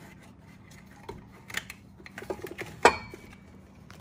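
Scattered clicks and knocks as the fuel filter assembly is worked back down into a tight engine bay, with the loudest knock a little under three seconds in, followed by a brief ring. The part is not going in easily.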